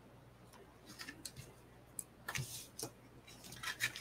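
Scissors snipping off the ends of a ribbon on a card: a few faint snips and clicks, followed near the end by light rustling of cardstock being handled.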